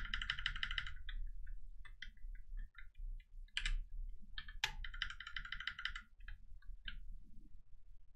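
Computer keyboard being typed on: scattered single key clicks, with two fast runs of clicks about a second long, one at the start and one a little after the middle.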